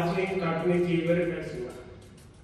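A man's voice preaching in slow, drawn-out tones, trailing off near the end.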